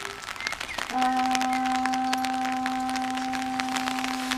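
Scattered light clicks and taps, then about a second in a wind instrument starts sounding one long steady note that holds without change.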